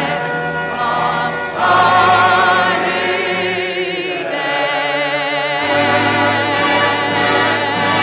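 Background music: a choir singing long held notes with vibrato.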